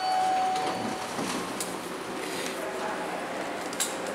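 Traction elevator's stainless-steel doors sliding open, starting with a short steady beep in the first second, then a steady mechanical hum from the door operator.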